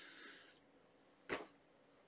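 Faint sniffing through the nose as a man smells perfume on his hand, then one short, sharp sniff about a second and a half in.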